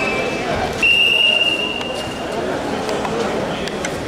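A sambo referee's whistle gives one long, steady, shrill blast about a second in, the signal to start the bout, over the murmur of a crowded sports hall.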